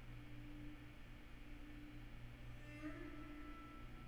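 Near silence: faint room tone with a low, steady electrical hum.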